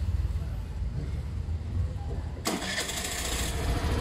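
Suzuki Burgman scooter engine starting about two and a half seconds in and then running. It starts without cutting out, the sign that the side-stand kill switch lets it run with the stand up.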